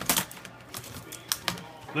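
Laptop keyboard being lifted out and laid over on the laptop: a handful of sharp plastic clicks and key rattles, the loudest right at the start.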